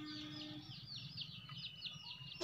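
Faint bird chirping: a quick run of short, falling high notes, about five a second.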